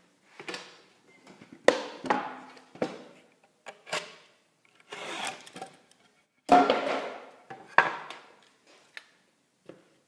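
A utility knife cutting drywall, with the cut board and a metal drywall T-square knocking on a workbench. It comes as a string of separate sharp knocks and short scrapes with pauses between, the loudest a little past six and a half seconds in.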